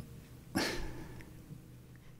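A short, breathy huff of air close to the microphone about half a second in, fading within half a second, over a faint steady hum.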